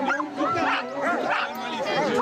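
Several harnessed sled dogs (huskies) yelping and howling excitedly, with many overlapping calls that rise and fall in pitch.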